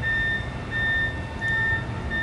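A vehicle's reversing alarm beeping repeatedly in a steady high tone over a low engine rumble.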